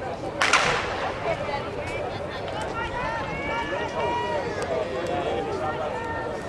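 Chatter of many voices, with one sharp crack about half a second in.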